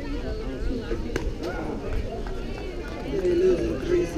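Indistinct voices of several people talking over one another, with one voice held louder a little after three seconds in. A single sharp click comes about a second in.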